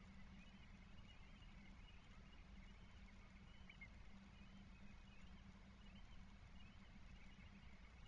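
Near silence: the outdoor microphone picks up only a faint, steady low hum, with faint scattered high chirps.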